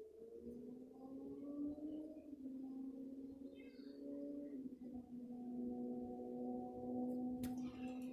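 A quiet, slow melody of long held notes that shift pitch a few times. A short sharp click comes near the end.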